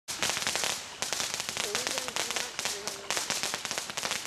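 Strobe mine firework going off: a dense, rapid crackle of strobing stars that starts abruptly and comes in repeated surges.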